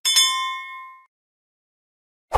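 A single bright bell ding sound effect, the notification-bell chime of a subscribe-button animation: struck once, it rings with several tones and fades out within about a second.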